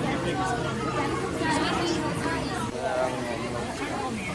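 Crowd chatter: many visitors talking at once in an indoor exhibit hall, overlapping conversations with no single voice standing out.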